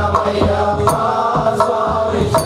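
Ayyappa devotional chant sung by a man into a microphone, his voice held on sustained pitches, with a few sharp percussion strikes through it.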